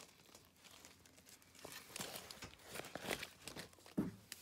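Faint crinkling and rustling with scattered small clicks: a bag being rummaged through by hand, in search of one more turtle.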